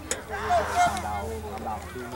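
Indistinct voices of spectators talking and calling out, several overlapping.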